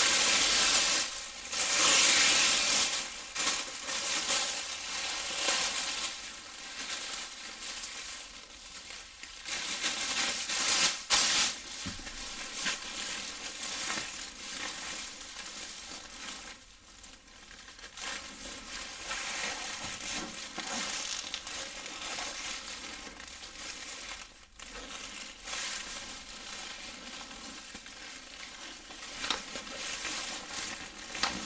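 Thin disposable plastic apron being handled, unfolded and put on, crinkling and rustling close to the microphone. It is loudest in the first few seconds, with a sharp crackle about eleven seconds in, and softer after that.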